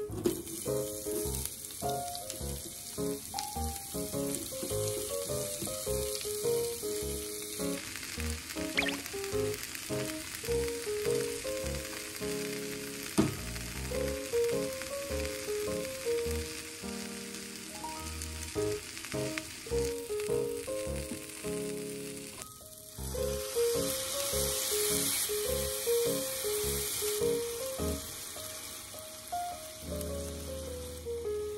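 Sliced onion and carrot sizzling in oil in a frying pan, a steady hiss that is strongest in the first few seconds and again after a short break about two-thirds of the way through, with background music playing throughout.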